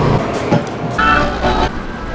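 A vehicle horn toots once, briefly, about a second in, over steady street and traffic noise.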